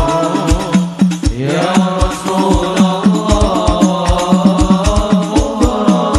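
Sholawat music: a sung melody in long, ornamented phrases over hadrah-style drums beating a steady rhythm with deep low strokes.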